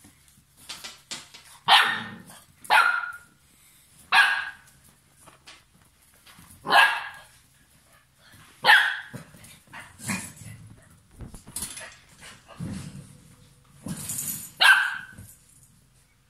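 Young puppies about seven weeks old barking during play: about six short, high, sharp barks spread out, with quieter scuffling noises between them.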